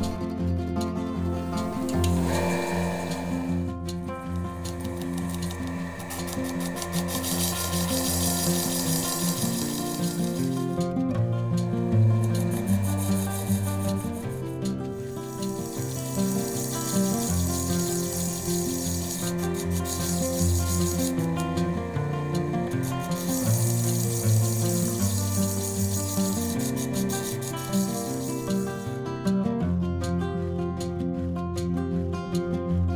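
Background guitar music over the rasping hiss of a quartz gem's girdle being ground against a spinning faceting lap; the grinding comes and goes in stretches of several seconds.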